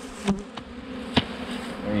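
A dense swarm of Carniolan honey bees buzzing in a steady drone as a package of bees is shaken into a hive, with a few sharp knocks from the screened package being jerked, the loudest about a second in.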